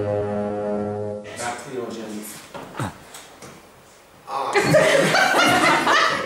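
A held musical chord stops about a second in. After a quiet stretch, people in a room start talking and laughing loudly near the end.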